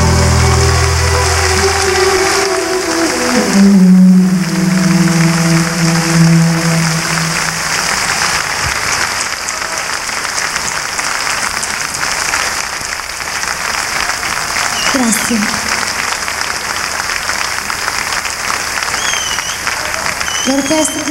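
The last held chord of a live orchestral pop medley, stepping up in pitch about three and a half seconds in and dying away by about seven seconds, while a large audience applauds. The applause keeps going steadily after the music stops.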